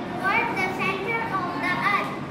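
A girl speaking, with other children's voices in the background.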